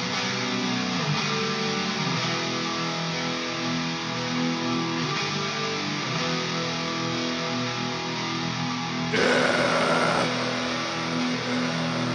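Black metal music: electric guitars play dense, sustained chords. About nine seconds in there is a louder, harsher burst lasting about a second.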